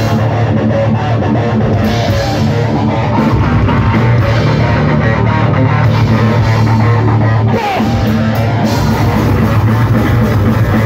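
Thrash metal band playing loud live: distorted electric guitar through Laney amplifiers, bass guitar and drum kit. A brief break in the low end comes about seven and a half seconds in.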